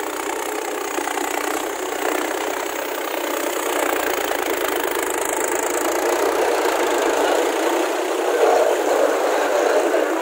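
Mahindra tractor's diesel engine running hard as the tractor is stuck in deep mud, a steady dense sound that grows somewhat louder toward the end.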